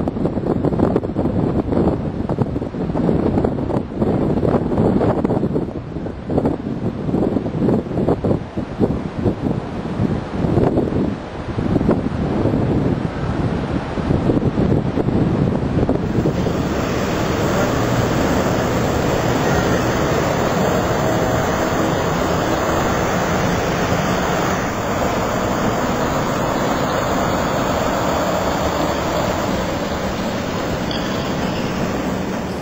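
Wind buffeting the microphone in uneven gusts. About halfway through, it gives way to a steadier, even rush of outdoor noise.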